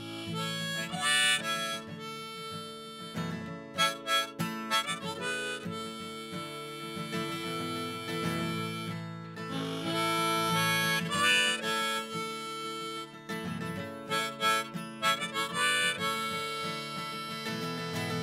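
Harmonica solo played from a neck rack over a strummed acoustic guitar, a continuous run of held, changing notes.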